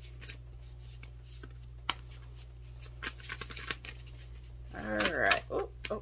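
Tarot cards being shuffled by hand: scattered soft clicks and snaps of card stock. About five seconds in there is a brief wordless hum from a woman's voice.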